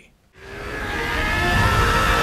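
Anime fight-scene soundtrack fading in after a brief silence: a rushing sound with held tones swells over about a second, then holds steady.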